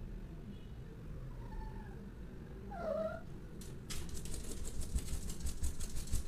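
Domestic cat meowing: a couple of faint meows, then a louder one about three seconds in. After that comes a fast run of scratchy clicks.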